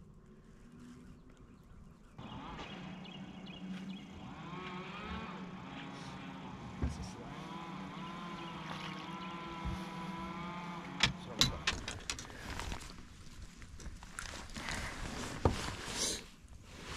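A steady motor hum that starts about two seconds in, with a higher whine that wavers in pitch, fading out after about twelve seconds. A few sharp clicks follow near the end.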